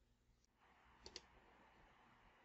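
A computer mouse button clicking once, heard as two quick faint ticks about a second in, in near silence.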